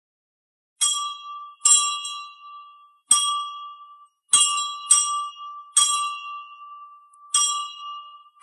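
A temple bell struck seven times at uneven intervals, starting about a second in. Each strike gives a bright, clear ring with a steady pitch that fades away slowly.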